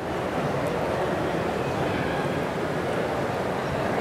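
Hot sauté pan of butter and crawfish sizzling as rice wine vinegar is poured in: a sudden, steady sizzle as the liquid hits the hot pan.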